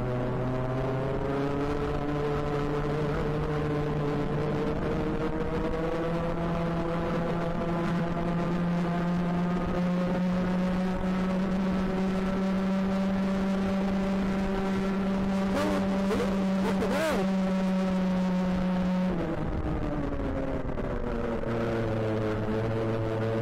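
Two-stroke racing kart engine heard onboard at full throttle, its pitch climbing slowly along a long straight. It drops abruptly as the throttle is lifted for a corner, then starts climbing again near the end. A few short sharp clicks come about three-quarters of the way through.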